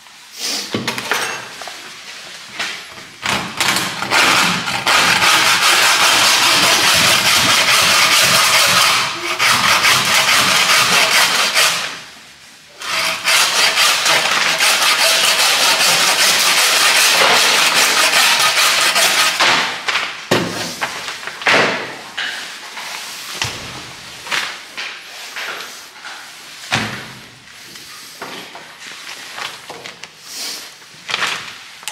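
A loud motorised machine or power tool runs with a steady hissing noise in two long stretches of about eight and six seconds, with a brief stop between them. Scattered knocks and handling sounds follow.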